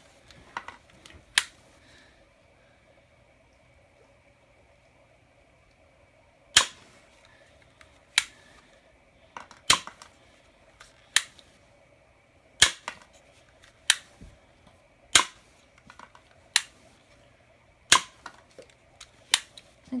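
Toy revolver that fires soft hollow-ended bullets by a puff of air, being shot repeatedly. A series of sharp snaps comes roughly one every second and a half from about six seconds in, with a couple of fainter clicks earlier.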